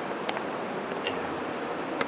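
Steady rushing of a flowing river, with a couple of faint light clicks of plastic discs being handled.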